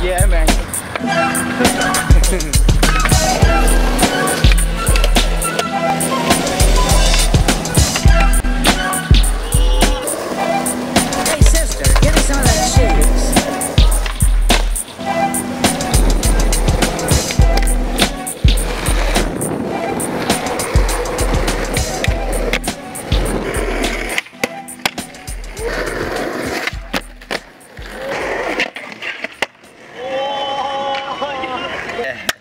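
Hip hop instrumental with a heavy bass beat, over which skateboard sounds come through: urethane wheels rolling on concrete and the sharp clacks of the board. The beat drops out about six seconds before the end, leaving the skateboarding sounds.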